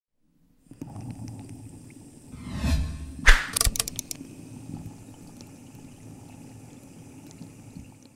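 Logo-intro sound effects: a low drone with a rising, watery rush that ends in a sharp hit about three seconds in, followed by a quick run of bright sparkly ticks. The drone then carries on quietly.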